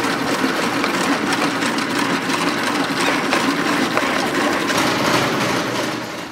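Small electric toy motors and their gears running steadily, with fine rapid ticking, as they drive the moving fake carnivorous-plant creatures of a mechanical sculpture.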